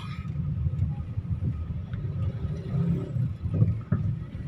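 Low, steady rumble of a car's engine and tyres heard from inside the cabin while driving.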